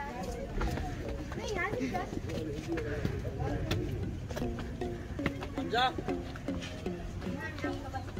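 Voices of people nearby talking, with short held, sung-like pitched tones in the second half and a few sharp clicks.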